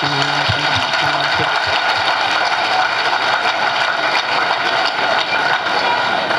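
Steady applause from a large crowd, a dense clatter of many hands, with a man's voice at a microphone trailing off in the first second or so.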